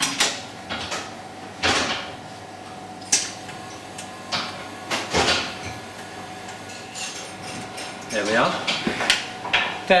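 Rofin laser welding machine firing several separate pulses, each a short sharp snap, spaced one to two seconds apart, as it spot-welds a ring onto a titanium pendant under shielding gas. A steady faint machine hum runs underneath.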